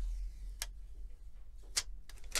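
Two short, sharp clicks about a second apart as gloved hands handle a smartphone screen panel and its plastic protective film, over a steady low hum.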